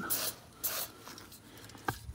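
Aerosol can of spray lubricant hissing in two short bursts, the second about half a second after the first, then a light click near the end.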